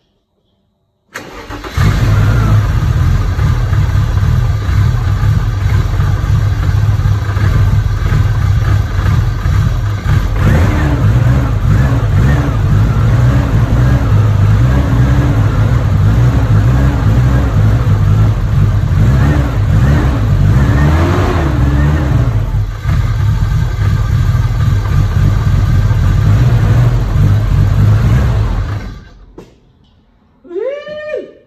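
BMW E34 M5's S38 straight-six engine catching after a brief crank about a second in, then running steadily and loudly until it is shut off near the end. This is the first start after new injector O-rings and a restored vacuum system.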